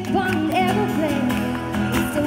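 A woman singing over a strummed acoustic guitar, played live.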